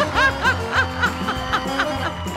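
A rapid run of short giggling laughs, about four or five a second, over background music.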